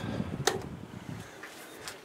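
An electric fan being switched off: a switch click about half a second in, then the fan's running noise dying away as it winds down, with another light click near the end.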